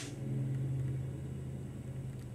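A steady low hum with no other event; the cap's pop has already gone off.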